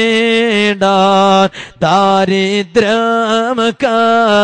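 A man singing a devotional Islamic salawat chant, holding long, slightly wavering notes phrase after phrase, with short breaks for breath between phrases.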